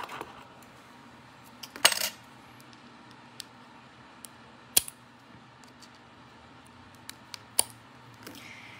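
Metal tweezers clicking against a Copic marker's plastic barrel while trying to work a dried-out part loose: a handful of separate sharp clicks, the loudest about two seconds in.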